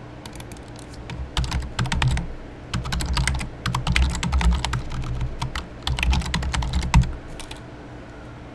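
Typing on a computer keyboard: a quick, irregular run of key presses that starts about a second in and stops about a second before the end.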